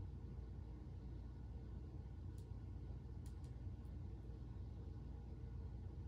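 Quiet room hum with a few faint, short clicks in the middle from plastic toy parts being handled.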